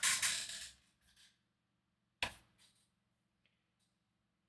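A short rush of hissy noise at the start, then a single sharp click a little past two seconds in, followed by a couple of faint ticks, over a faint steady low hum.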